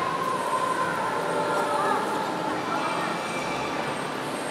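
Echoing ambience of a large glass-roofed indoor hall: a steady din of distant voices and footfall noise, with a held whine in the first second that fades out.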